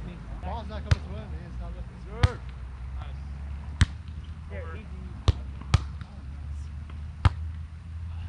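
A volleyball being struck by players' hands and forearms during a sand-court rally: six sharp smacks, mostly a second and a half apart, with two close together about five seconds in.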